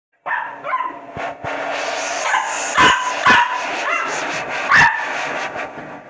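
A corgi puppy barking over and over in short, high-pitched yaps at a hair dryer. The dryer runs with a steady blowing hum from about a second and a half in.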